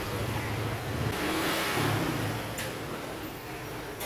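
Chopped mushrooms frying in a pan, with a spatula stirring and scraping them around; the sizzle swells for a moment about a second and a half in.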